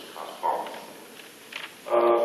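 A short pause in a man's talk: one brief voiced sound about half a second in and a fainter one shortly before the end, over steady room hiss.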